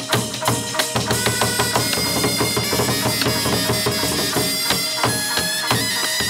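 Chầu văn ritual music: quick drum and wood-block strokes under a held, reedy melodic line.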